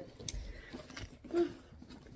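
Faint rustle and small clicks of a leather handbag being handled, with a brief voiced hum about one and a half seconds in.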